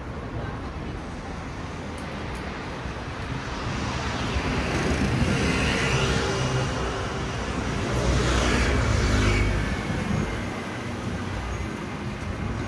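Traffic passing on a city street: one car goes by about five seconds in, then a heavier vehicle with a deeper rumble passes around eight to nine seconds, each swelling and fading away.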